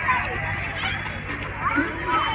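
Background voices of children and other people calling and chattering in the open, over a low steady rumble.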